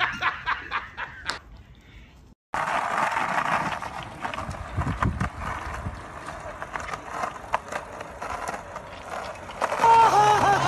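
Skateboard wheels rolling on pavement under a riding dog: a steady rough rumble dotted with small clicks, starting about two and a half seconds in.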